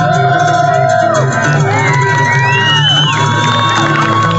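Live band music from the stage: a melody of long held notes that slide up and down between pitches over a steady bass, with the crowd cheering and whooping.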